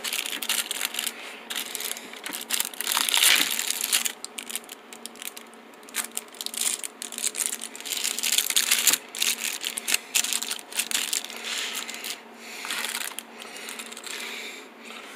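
Clear plastic packaging bags crinkling and rustling as they are handled, in irregular bursts, with a few sharp clicks and knocks of small parts and a sunglasses hard case being moved.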